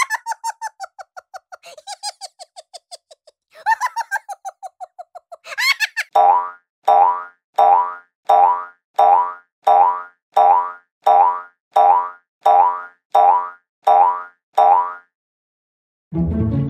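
Cartoon 'boing' spring sound effects: first quick runs of rapid boings that fade away, then from about six seconds a steady series of about a dozen boings, roughly one every 0.7 s, each dropping in pitch.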